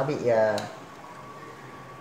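A word of speech, then the faint steady hum of a soldering gun held to a circuit board while a solder bridge is made across a safety switch.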